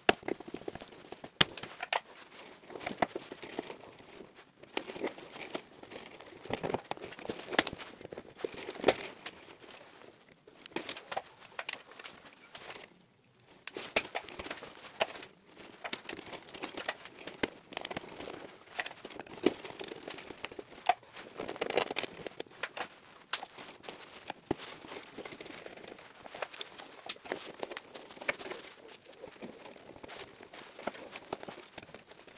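Hand work on electrical wiring in a distribution board: irregular clicks, taps and rattles from a screwdriver at the terminals and stiff installation cables being bent and routed, with rustling in between. A louder cluster of handling noise comes a little after the middle.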